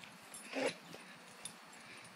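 A dog gives one short, quiet vocal sound a little over half a second in, with a faint click a moment later.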